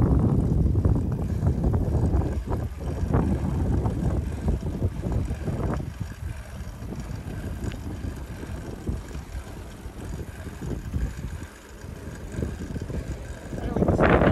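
Wind buffeting the microphone, with tyre rumble, from a bicycle riding on a paved road. The rumble is louder for the first six seconds or so, then drops lower.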